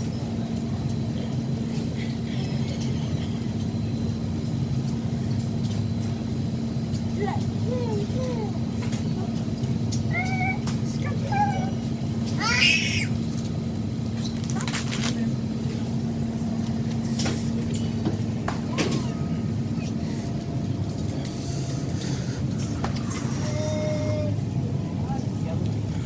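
Supermarket background: a steady low hum along a refrigerated aisle, with scattered faint voices. About halfway through comes a short, loud, high-pitched cry.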